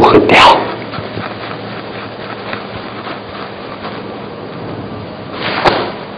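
A man coughing into his hand, a short loud burst at the start, followed by the quiet steady hiss of a lecture hall with a faint hum. A brief sharp breath-like noise comes near the end.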